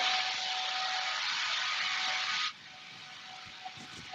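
Worx 20-volt cordless blower running at full power, a steady rush of air with a motor whine. It cuts off sharply about two and a half seconds in, leaving a much fainter whine.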